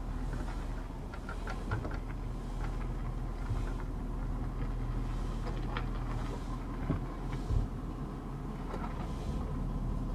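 Pickup truck engine running steadily at low speed, a low even hum, with a few light clicks and a low knock about seven and a half seconds in.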